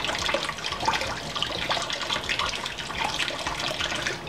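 Water running steadily from a kitchen faucet over hands and into a sink while a sponge-tipped makeup applicator is squeezed and rinsed of soap under the stream.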